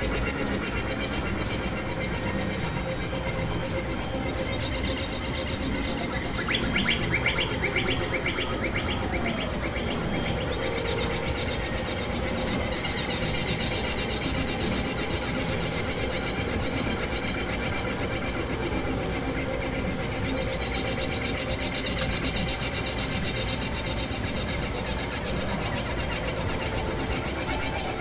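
Experimental electronic noise music: dense, layered synthesizer drones with short high whistling tones that come and go. There is a quick pulsing figure for a few seconds about a quarter of the way in.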